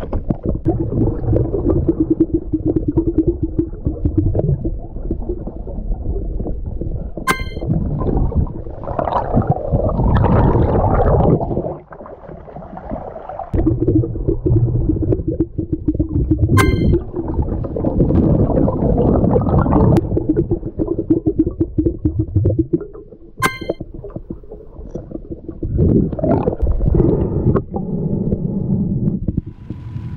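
Muffled underwater noise from an action camera held under water while snorkelling: a low rumble of water movement, with three sharp clicks spread through it.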